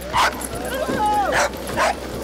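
A small dog giving a few short, high yips and whines that fall in pitch, mixed with a few sharp clacks.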